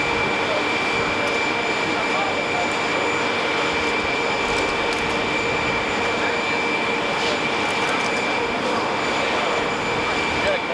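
Jet aircraft engines running steadily: an even, continuous noise with a constant high-pitched whine over it.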